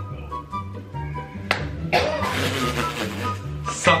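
Background music with a steady beat; about one and a half seconds in, a single sharp smack as a palmful of baby powder is slapped onto a face, followed by a noisy stretch and another sharp sound near the end.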